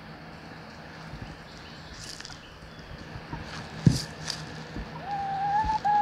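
Faint yard background with a low steady hum and scattered rustles, a single sharp knock a little after midway, then in the last second one drawn-out, slightly rising call from a chicken.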